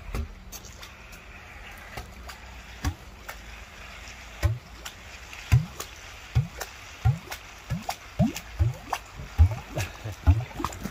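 Wet concrete gurgling out of the end of a four-inch concrete pump hose as the line is blown through behind a sponge ball: irregular short glugs that come faster and louder from about four seconds in.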